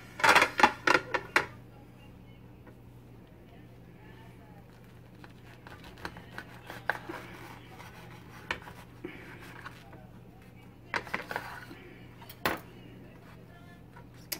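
A kitchen knife cutting through toasted sandwiches on a ceramic plate, the blade clinking and knocking against the plate. There is a loud cluster of clatter at the start, scattered light taps through the middle, another cluster about eleven seconds in, and one sharp knock soon after.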